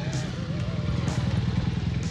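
Motorcycle engine running steadily, a rapid low throb of firing pulses.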